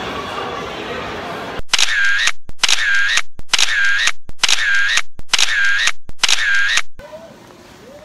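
Camera shutter sound effect, repeated six times at even spacing, each identical and separated by dead silence. Before it, a second or so of background crowd noise.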